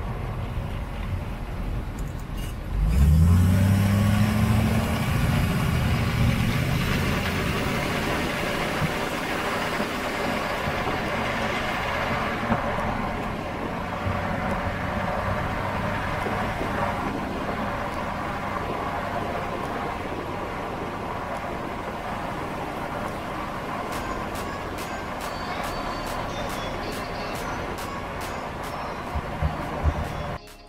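A 2019 Ford F250's 6.7-litre Power Stroke V8 turbodiesel running, heard close at an 8-inch exhaust tip. About three seconds in the engine note rises sharply and is at its loudest, then it settles over the following seconds into a steady idle.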